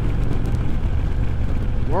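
Steady low rumble of wind and a Harley-Davidson Road King Special's V-twin engine and tyres at highway cruising speed.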